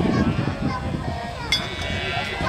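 Indistinct talking and murmuring voices over a low rumble, with a single sharp click about one and a half seconds in.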